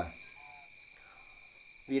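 Crickets trilling steadily in the background, one unbroken high tone.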